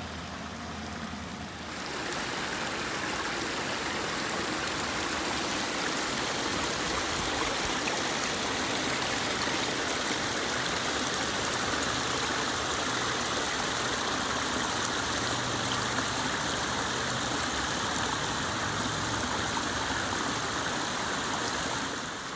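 Spring water running out of a small dammed pool and splashing down over mossy rocks in a small cascade: a steady rush of flowing water that grows louder about two seconds in and then holds even.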